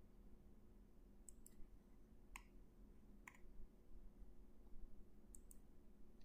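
Faint computer mouse clicks, about six spread unevenly, two of them in quick pairs, as points are placed while tracing with a polygon line tool. A faint steady low hum lies underneath.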